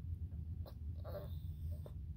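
Small dog whining faintly, with one brief whimper just past a second in, over the steady low rumble inside a moving car.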